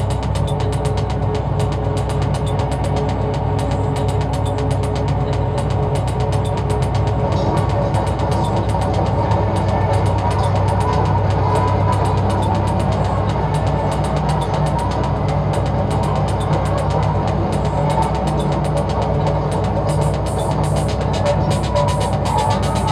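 Electronic music with a heavy, sustained bass and a fast, even run of clicking, mechanical-sounding percussion.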